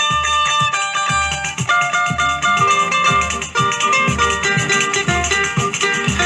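Instrumental introduction of a samba de enredo: plucked strings play a melody over a steady low drum beat, with a shaker.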